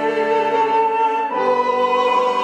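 Small mixed choir singing sustained chords with a flute, the harmony moving to a new chord about a second in.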